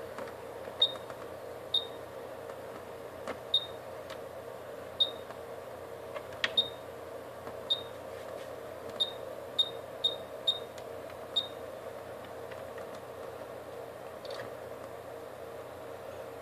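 Rigol DS1052E digital oscilloscope giving short high key beeps, about eleven of them at uneven intervals over the first twelve seconds, as its controls are turned to change the timebase, over a steady background hum.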